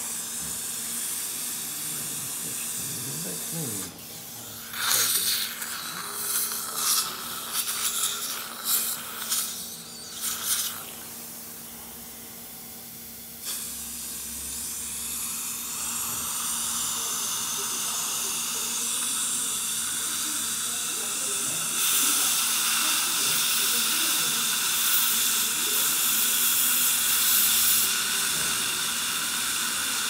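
Dental suction tip hissing as it draws air and water from the mouth, with irregular louder bursts between about five and eleven seconds in and a louder stretch from about twenty-two seconds. A faint steady hum runs underneath.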